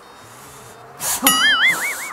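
Comedy sound effect about a second in: a sudden burst of noise followed by a whistle-like tone that wobbles up and down in pitch four or five times.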